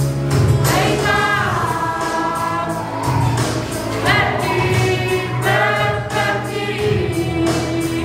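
A group of young people singing a gospel song together, in long held notes that slide from one pitch to the next over a low, steady accompaniment.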